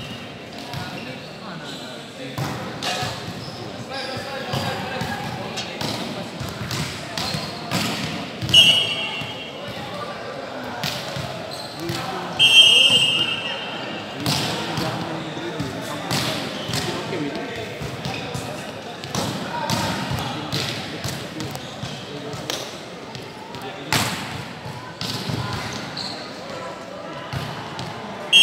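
Volleyball referee's whistle blown in two short, shrill blasts, about a third of the way in and again near the middle, signalling stops and restarts of play. Between them come sharp hits of the ball and players' voices echoing in a large hall, with a hard ball strike near the end.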